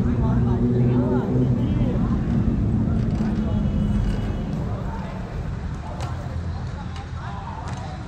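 Outdoor urban background: a motor vehicle engine running with a steady low hum that fades after about five seconds, under scattered distant voices.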